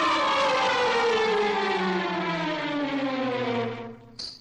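A siren-like tone with many overtones gliding steadily down in pitch for about four seconds, then dying away near the end.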